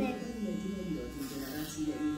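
Electric hair clippers buzzing steadily as they cut a boy's short hair, with a voice over the hum.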